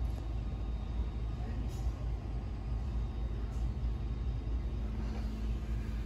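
Steady low rumble of indoor room noise with a faint steady hum, and faint indistinct voices in the background.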